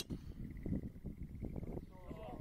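Golf driver striking a ball off the tee: one sharp crack right at the start. Faint outdoor background and murmured voices follow.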